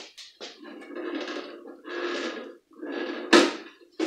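Hands working the top cover off a White Westinghouse / Tria Baby espresso machine whose screws are already out: several short rubbing noises and one sharp click a little over three seconds in.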